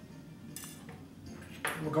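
A wine glass set down on a countertop with a single light, ringing clink about half a second in, followed by a fainter tap; otherwise quiet room tone until a man starts talking at the very end.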